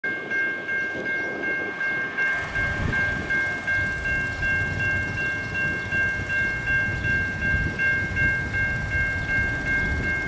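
Railroad crossing bell ringing in a steady, even repeat, about two strokes a second, as the crossing gates come down for an approaching train. A low rumble builds beneath it from about two seconds in.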